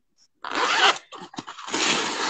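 Rustling and scraping of a phone being moved about against fabric, heard through the call: a hissing rustle about half a second in, a few clicks, then a second rustle near the end.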